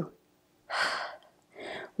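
A woman breathing audibly, two breaths about a second apart, the first louder, while holding a deep squatting yoga twist.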